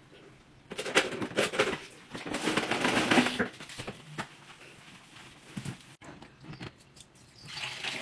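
Water sloshing in bursts as an O-Cedar spin mop is dunked and worked in its bucket, then quieter mopping on tile. Near the end, dirty mop water pours out of the bucket.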